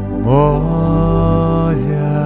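A song: a voice slides up into one long held note about a quarter second in and lets it go shortly before the end, over a steady low sustained accompaniment.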